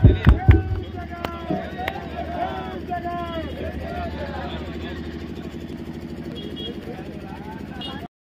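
A crowd of people talking and calling out together over a steady low hum. In the first second and a half there is a quick run of sharp cracks, with a few loud thumps right at the start.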